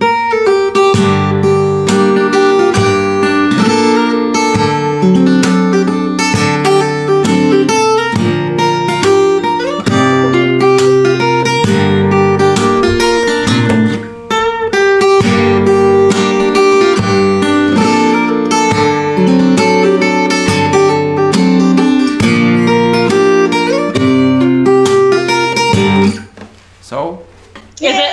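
Acoustic guitar played solo, a melody over a moving bass line, with a short break about halfway through.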